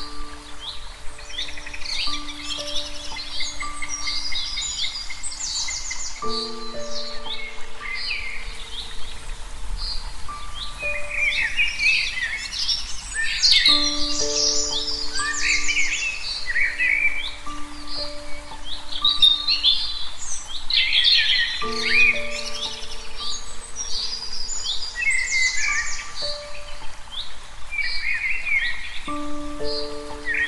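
Many small birds chirping and trilling in quick, overlapping calls, over soft background music of slow, held notes.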